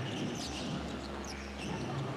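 Basketball court sound: sneakers squeaking on the hardwood floor and a ball being dribbled, over a low steady hum in the arena. The sharpest squeaks come about half a second in.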